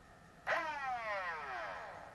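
The electric motors of a 3D-printed Lepus Mk1 fully automatic Nerf blaster rev up suddenly about half a second in, then spin down. The whine falls steadily in pitch and fades over about a second and a half.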